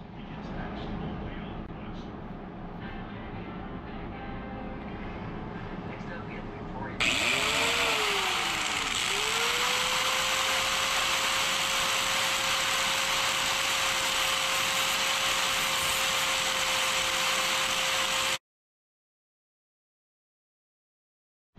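Angle grinder starting about seven seconds in: its motor pitch rises, sags as the disc bites into the steel, then holds steady while it grinds into the seized bearing race on the mower's pulley shaft. It cuts off suddenly near the end; before it starts there is only a quieter, steady shop noise.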